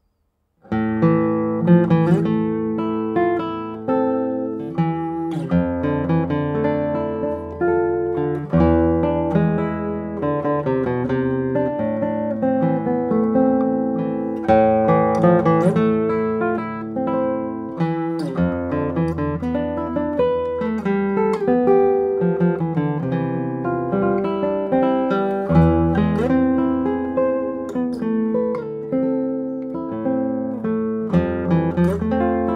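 Michel Belair 2023 No. 64 classical guitar, a cedar double top with Nomex core and Indian rosewood back and sides, strung with Knobloch carbon strings, played solo and fingerpicked. The playing starts suddenly under a second in, with a plucked melody over sustained bass notes that change every few seconds.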